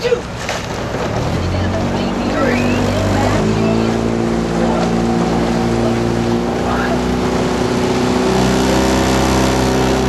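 Motorboat engine speeding up, its steady note stepping up in pitch about one and a half and three and a half seconds in, then running evenly and growing slightly louder.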